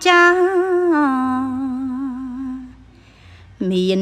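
Khmer smot: an unaccompanied solo voice chanting a lullaby. A long held note steps down to a lower sustained note with a slight waver and fades out about three seconds in. After a short pause a new phrase starts lower, near the end.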